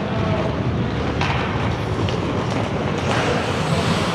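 Ice hockey play on an indoor rink: a steady low rumble, with hissing skate blades scraping across the ice about a second in and again near the end.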